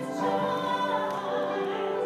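Soprano and alto voices singing together, holding long sustained notes.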